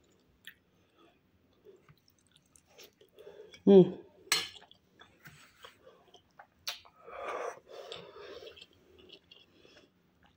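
A person chewing food, with soft mouth noises and a few sharp clicks, and a brief voiced murmur about four seconds in.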